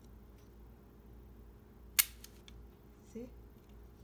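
A single sharp plastic click about two seconds in, as a Spider-Man Happy Meal toy's retracting string reels back in and its plastic web disc snaps back against the figure.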